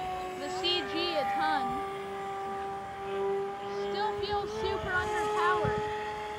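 Electric motor and propeller of an FT Edge 540 RC foam plane in flight, a steady whine held at one pitch, with brief swoops in pitch.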